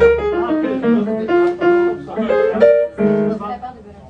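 Live jazz jam music: a melody moving note to note over guitar and keyboard, one note held with a waver about three seconds in.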